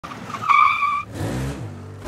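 Intro sound effect of car tyres squealing for about half a second, followed by a low note that rises and then falls in pitch.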